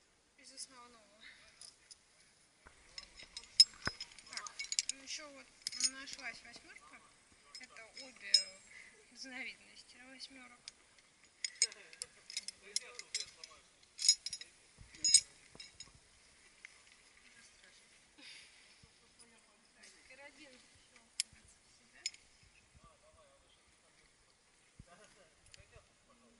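Metal climbing hardware, carabiners and a descent device, clinking and clicking as it is handled and clipped onto a harness: many sharp clinks in irregular clusters, busiest in the first half and sparser later.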